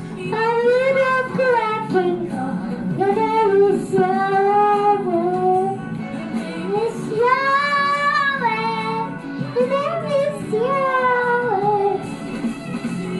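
A young girl singing a worship song, holding long notes that bend up and down between short breaths.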